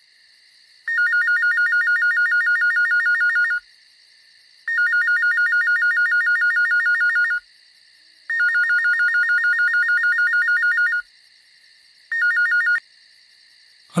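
A phone ringing with an electronic trill: three long rings about a second apart, then a short fourth ring cut off as the call is answered.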